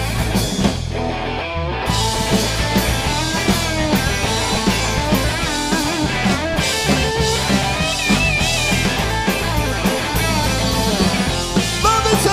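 Garage rock band playing live: electric guitars, electric bass and drum kit in a loud, driving instrumental stretch with no singing.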